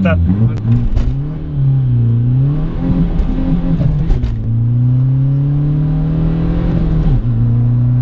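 Tuned VW Bora 1.9 TDI diesel engine (raised from 110 to about 215 hp) pulling hard in a standing-start launch, heard from inside the cabin. The engine note climbs to about 5000 rpm, drops sharply at a gear change about four seconds in and again just after seven seconds, then climbs again each time.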